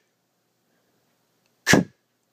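A short, breathy, voiceless letter sound, a puff of breath like a phonics /h/ or /k/ said without voice, once near the end.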